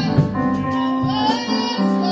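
A woman singing a gospel song into a microphone, backed by a church band with keyboard and drums, with a few drum hits.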